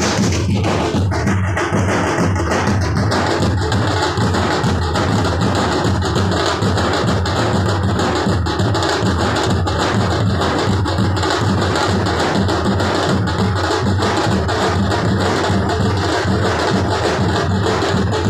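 Loud, fast drumming from a percussion ensemble: dense sharp stick strokes that run without a break, at a steady level.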